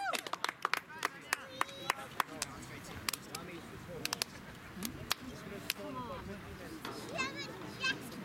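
Shouts and chatter of soccer players and sideline spectators, with scattered sharp clicks, most of them in the first few seconds.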